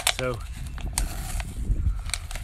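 Thin plastic water bottles crinkling and clicking in the hands as masking tape is pressed around their joined bottom ends. A few sharp crackles sit over a low rumble.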